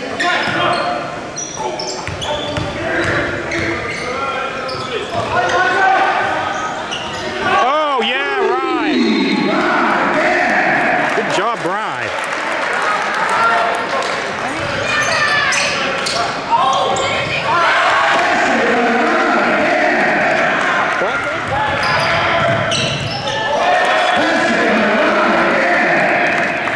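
Basketball being dribbled on a hardwood gym floor, with sneakers squeaking on the court about eight and twelve seconds in, under indistinct voices of players and a small crowd in a large echoing gym.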